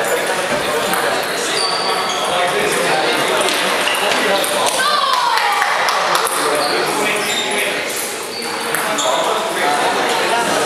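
Table tennis ball clicking off bats and the table in a rally, over steady background chatter of people in a large hall.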